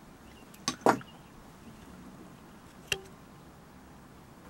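Sharp metal knocks from the just-removed steel core plug and screwdriver being handled against the cast-iron block: two close together about a second in, the second the loudest, and a single short ringing clink near the end.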